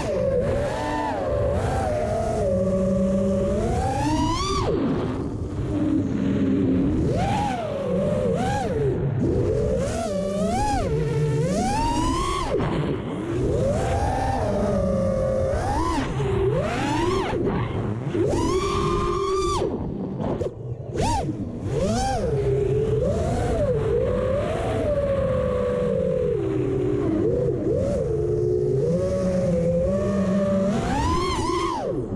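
Racerstar 2207 2500 kV brushless motors of an FPV quadcopter whining in flight, their pitch rising and falling constantly with the throttle.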